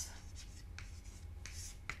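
Chalk writing on a chalkboard: a string of short, faint scratching strokes as a heading is chalked up.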